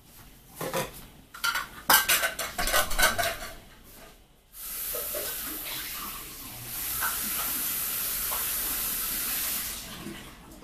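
Cups, dishes and utensils clinking and knocking together for the first few seconds. Then a steady hiss starts suddenly, grows louder about seven seconds in and stops just before the end.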